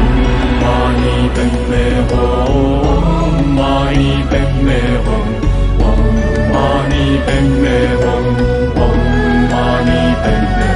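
Chanted mantra set to music: a sung, gliding melody over a steady low drone.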